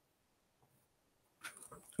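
Near silence in the pause between speakers, with a faint, brief voice sound near the end, just before speech resumes.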